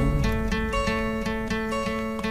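Background music: an acoustic guitar picking a steady pattern of held notes in a pause between sung lines.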